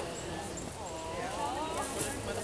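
Indistinct voices of people talking in the background, with a rising and falling voice heard through the middle.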